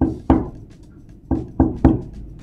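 Knuckles knocking on a tabletop beside a microphone module: five sharp knocks, two near the start and three about a second later.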